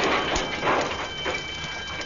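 Crash sound dying away: a loud rumbling noise of a vehicle smashing through a wall fades down, with a few clatters of falling debris and a faint high ringing over it.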